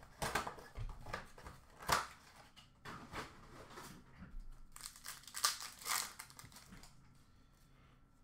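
Foil wrappers of Upper Deck hockey card packs crinkling and tearing as packs are ripped open by hand, in irregular sharp rustles and rips that die away in the last second or so.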